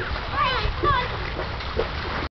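Water splashing and sloshing in shallow water as a dog steps through it, with children's high voices calling in the background.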